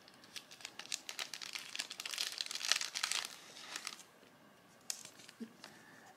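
Plastic binder pages crinkling as trading cards are handled: a run of small crackles and clicks over the first four seconds, then only a few faint clicks.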